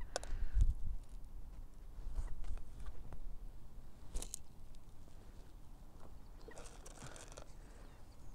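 Feed pellets fired from a bait catapult: a few short sharp snaps and light patters as the pouch is released and the pellets land in the lake, the strongest about four seconds in. There is a low rumble on the microphone in the first second.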